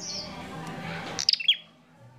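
A small caged songbird makes a short high chirp, then a rustling that builds up, then a quick burst of loud, sharp chirps that slide down in pitch, about a second and a quarter in.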